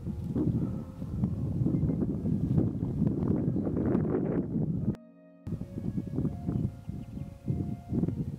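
Gusty wind buffeting the microphone, with a few faint steady tones above it. The sound drops out briefly about five seconds in.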